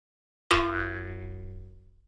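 A single added sound-effect hit: one struck, ringing note with many overtones that starts suddenly about half a second in and dies away over about a second and a half.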